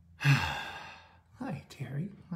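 A man's long, breathy sigh that starts loud and fades away over about a second, followed by a few soft murmured speech sounds near the end.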